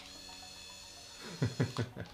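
A man's short chuckles, three quick bursts near the end, over a faint steady high-pitched whine.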